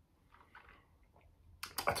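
Faint wet mouth clicks and lip smacks from someone savouring a sip of rum that is making his mouth water, then a man starts speaking near the end.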